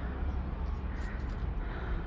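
Outdoor background noise: a steady low rumble with faint, indistinct murmurs of distant voices.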